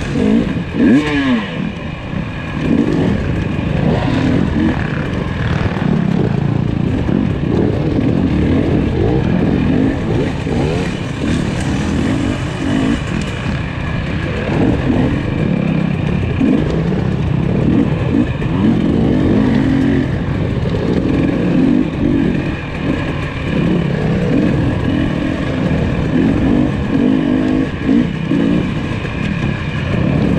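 KTM 300 XC two-stroke dirt bike engine under the rider, revving up and down continually as the throttle is worked along a tight, rutted woods trail.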